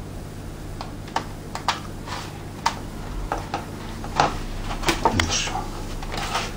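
Light, irregular clicks and crackles of a thin plastic RC car body shell being handled as a carbon-fibre reinforcement strip is pressed into place on it.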